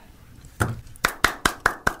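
One person clapping hands in a quick, even run of about five claps a second, starting about half a second in.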